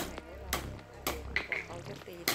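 Hand hammer striking a hot sword blade on a small anvil block during hand forging: four sharp strikes about half a second apart, the first the loudest.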